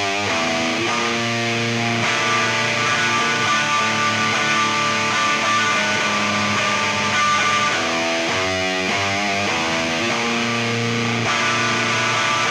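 Hardcore punk band recording: electric guitars playing sustained chords and sliding riff figures, with no singing. A busier riff returns about eight seconds in.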